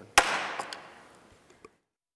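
A single sharp wooden gavel strike marking the adjournment, its echo fading in a large hall over about a second, followed by a few faint clicks before the sound cuts off abruptly.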